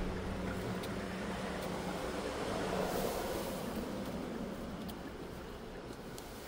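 Steady hum and rush of background noise inside a minivan's cabin, with a faint low tone throughout, a gentle swell about halfway and a few faint clicks.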